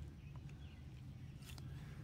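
Faint outdoor background with a low steady hum and two or three faint clicks as a plastic hose-nozzle spray gun is handled and set down on grass.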